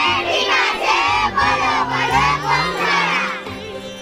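A crowd of many voices, mostly high-pitched, shouting together loudly, dying down shortly before the end.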